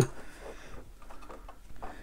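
Faint handling noise from 3D-printed plastic toy parts being shifted by hand: soft rubbing with a few light clicks.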